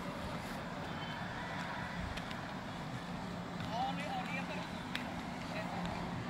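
Construction-site ambience: a steady low engine hum from distant earthmoving machinery, with faint far-off voices near the middle.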